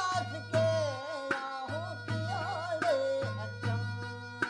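Indian folk music played by local musicians on traditional instruments: an ornamented, wavering melody over a steady drone, with a drum struck about every three-quarters of a second.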